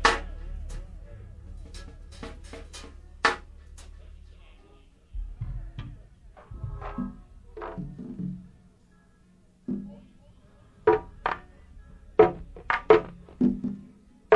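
Go-go band drums and percussion giving scattered, irregular hits between numbers, with a few short muffled voices, on an off-the-board tape of a live show. A steady low hum under the first few seconds stops partway through, and the hits come thicker near the end.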